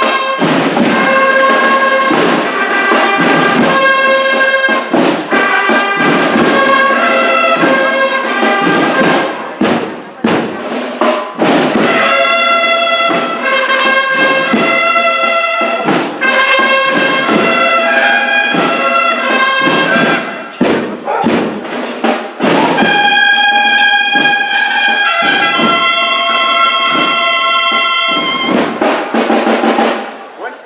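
A procession brass band playing a Holy Week march in loud, held chords, with short breaks between phrases about ten and twenty seconds in; the music stops at the very end.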